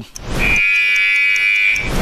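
A rising whoosh, then a steady high-pitched electronic tone held for about a second and a half before it cuts off.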